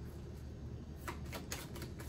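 Tarot deck being shuffled by hand: a few faint card clicks in the second half, over a low steady hum.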